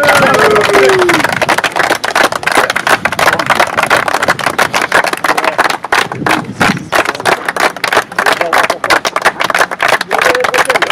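Close-range applause: many people clapping their hands fast and unevenly, with a voice over it in the first second.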